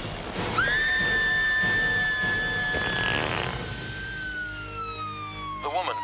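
Siren wailing: a tone sweeps up quickly and holds high for over two seconds, then after a short break comes back lower and slowly falls away.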